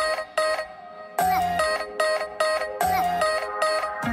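Background electronic music: a bright, repeating synth melody over a beat, with the bass dropping out for about a second near the start.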